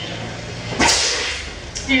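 A single sharp slap of a hand across a face, about a second in, with a short ring of reverberation after it, part of a recorded dramatic dialogue track.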